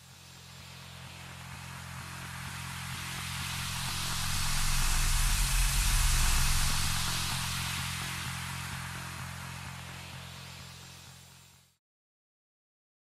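End-card music sting: a low sustained droning chord under a rushing hiss that swells up to a peak about halfway through, then fades away, cutting to silence just before the end.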